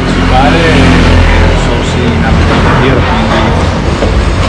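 A motor vehicle's engine running close by, a steady low rumble and hum, with voices over it.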